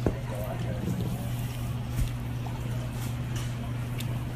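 Bar room ambience: faint voices over a steady low hum, with two sharp knocks, one right at the start and one about two seconds in.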